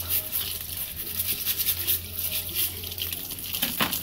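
Live crabs being scrubbed clean by hand one at a time, with scraping and splashing of water, and a sharp knock near the end.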